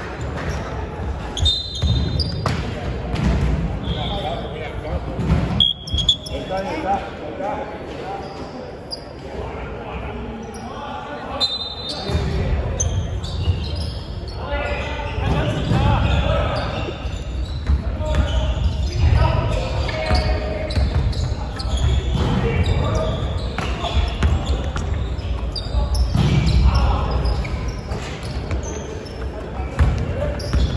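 Basketball bouncing on a hardwood court during play in a large sports hall, with a few brief high squeaks from sneakers on the floor and players' voices calling out.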